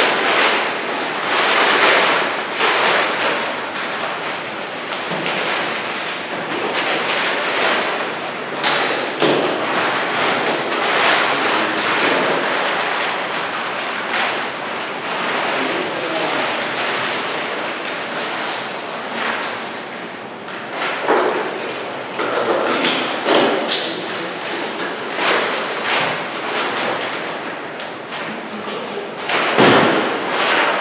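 Papers rustling and cardboard document boxes being handled on a table, with repeated thuds and knocks as things are set down and moved.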